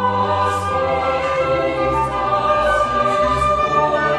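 Choir singing with a baroque orchestra accompanying, in several parts with sustained notes.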